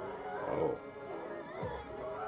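A demonic scream from a possessed girl, loudest about half a second in, over a horror film score.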